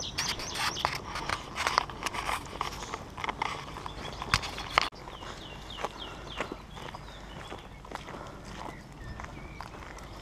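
Footsteps crunching on a gravel track for about the first half, then an abrupt change to quieter steps on tarmac. A small bird calls a quick run of short falling notes just after the change.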